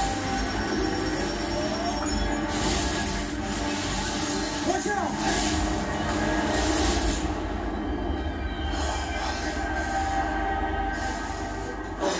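Television soundtrack of a superhero drama: a dense, steady mix of rumbling sound effects and score, with noisy swells about three, five and seven seconds in and a few short squealing glides.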